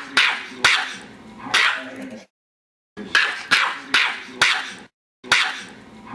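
A small dog barking in sharp, quick yaps about half a second apart. The barks come in three short runs, each broken off by a brief dead silence.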